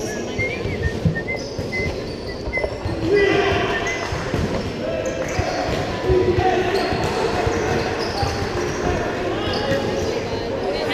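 Basketball bouncing on the court during live play, with the voices and calls of spectators and players echoing in a large gym and a few short high squeaks near the start.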